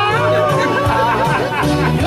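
Live band music with bass guitar notes underneath, and people talking and laughing over it.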